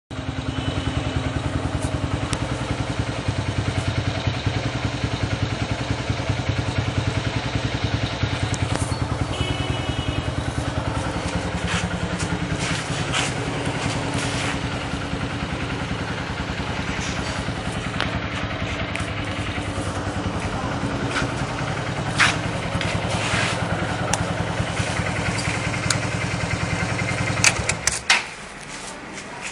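Hero Honda Hunk's 150 cc single-cylinder four-stroke engine idling steadily. A brief high tone sounds about ten seconds in, and a couple of sharp clicks come later.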